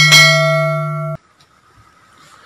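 A bright bell chime sound effect, struck once over a steady musical drone, as in a subscribe-button bell animation. Both cut off abruptly about a second in, leaving only faint background noise.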